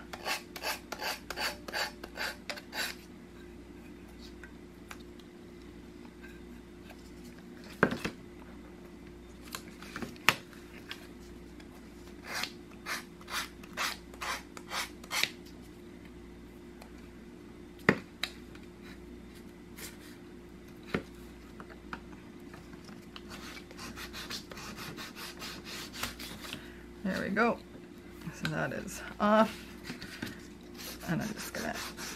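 A sanding stick rubbed back and forth along the paper-covered edge of a wooden rat trap, taking off the paper overhang and distressing the edge. It comes as runs of short rasping strokes, about four a second, with pauses and a few sharper single clicks in between.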